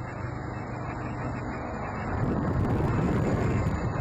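Outdoor road noise on a phone microphone: a nearby vehicle engine running with a steady low hum, turning into a louder, rougher rumble about halfway through.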